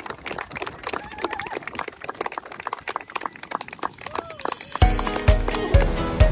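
Guests clapping and cheering, with a few whoops rising and falling. About five seconds in, music comes in with a heavy bass beat about twice a second.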